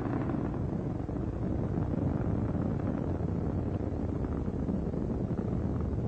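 Steady low rumble of Space Shuttle Atlantis's solid rocket boosters and three main engines during ascent.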